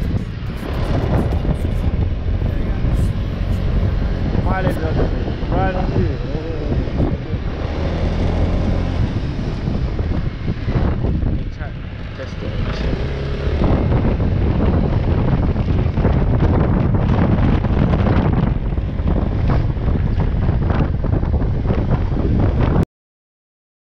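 Honda PCX 125 scooter's single-cylinder engine running under way, mixed with heavy wind rush and buffeting on the microphone. The sound grows louder a little past halfway as the scooter speeds up.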